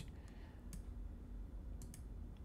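A few sharp computer mouse clicks: one under a second in and a quick double click near the end, over a low steady hum.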